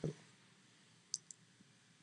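Quiet room tone with two faint, short clicks, a fraction of a second apart, about a second in.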